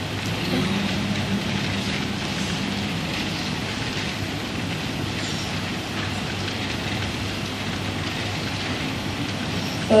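Steady background hiss of a hall picked up through a PA microphone while the Quran recitation pauses, with a faint low hum in the first three seconds.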